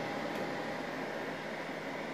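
Steady whir of the Creality CR-X 3D printer's cooling fans, an even hiss with a faint steady tone.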